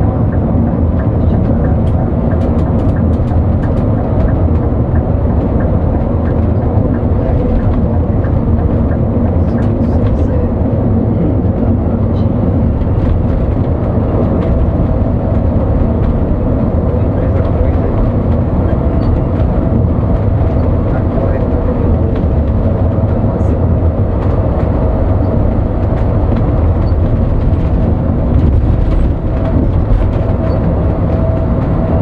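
Coach bus driving at highway speed, heard from the driver's cab: a steady drone of engine and road noise with a constant hum running through it.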